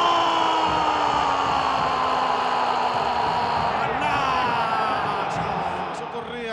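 Football TV commentator's drawn-out goal cry: one long held note slowly falling in pitch, then a second held cry starting about four seconds in, over stadium crowd noise.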